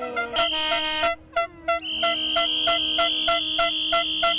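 Handheld aerosol air horns blaring: a short high-pitched blast about half a second in, then a long steady one from about two seconds in. Under them, other horns sound in a quick on-off rhythm.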